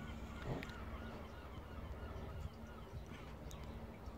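Faint outdoor background: distant bird calls over a low steady hum.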